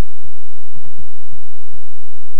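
Steady electrical hum on the recording line, with a few soft, irregular low thumps.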